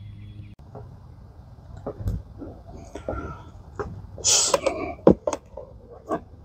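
Scattered handling noises: clicks and knocks, with a short scuffing rustle about four seconds in, as a leather welding glove is pulled on and the MIG welding gun is picked up.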